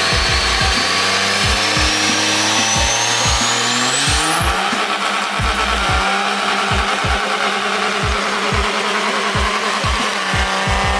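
2006 Dodge Ram's 5.9L Cummins diesel under full power during a burnout, with tyre squeal and a high turbo whistle that rises over about four seconds and then holds. Rap music with a steady kick-drum beat plays over it.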